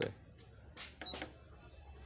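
A single short high beep from the keypad of a Walton digital price-computing scale, about a second in, as a digit key is pressed. It is the scale's key-press beep while the 5000 g calibration weight is entered in calibration mode.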